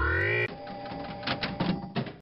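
Robot sound effects: a repeating rising electronic sweep that stops about half a second in, then a run of quick, irregular mechanical clicks, the robot taking in the pill to analyse it.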